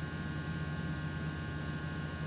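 Steady low electrical hum with an even background hiss, with no other sound standing out.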